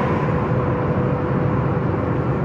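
Steady low hum and rush of a car's interior noise, with a faint steady tone running through it.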